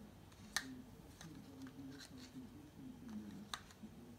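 Quiet handling sounds: a few light clicks and taps as a small plastic cup of paint with a marble inside is shaken and set back down among the other cups.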